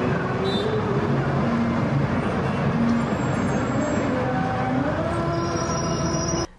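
Traffic ambience: a steady drone of road noise with engine tones that shift up and down in pitch.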